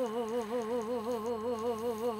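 A woman singing one long held note without accompaniment, the pitch wavering in a wide, even vibrato.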